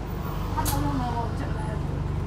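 Alexander Dennis Enviro400H MMC hybrid double-decker bus running, heard from inside the passenger saloon as a steady low drone, with a single sharp click about two-thirds of a second in.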